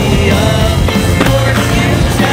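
Rock music with singing over a skateboard grinding along a wooden ledge, with a sharp clack about a second in as it comes down onto the paving and rolls on.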